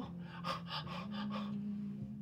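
A woman's quick run of excited breathy gasps, then a steady closed-mouth hum held for about a second.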